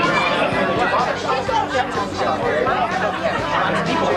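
Several people talking at once: overlapping conversation and chatter of a group of guests, with no single voice standing out.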